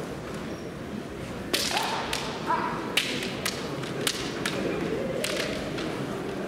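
Bamboo shinai clashing and striking in a kendo bout: about seven sharp cracks in quick, irregular succession, starting about a second and a half in.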